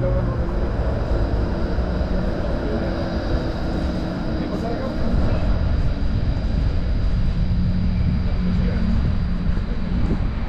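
City street traffic: cars running and passing on a wet road, a steady low rumble with engine hum throughout.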